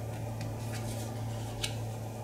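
A tarot card being turned over and laid flat on the table: a few faint ticks and a light tap about one and a half seconds in, over a steady low hum.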